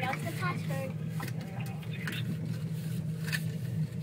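Steady low hum inside a moving gondola cabin, with a few soft clicks and brief muffled voices near the start.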